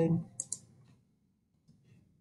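Computer keyboard Tab key pressed and released about half a second in: two quick, light clicks, followed by near silence.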